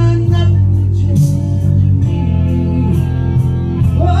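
Karaoke backing track of a guitar-led song playing loud through the bar's PA between sung lines, with the end of a sung note trailing off about half a second in.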